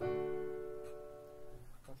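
A single chord struck at once and held, fading away over nearly two seconds: the D major V chord of G major, sounded as the resolution of its secondary dominant (A7, V7/V).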